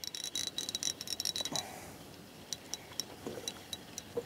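Spinning reel being wound in against a hooked fish: a fast run of small mechanical ticks that stops about a second and a half in, followed by a few scattered clicks.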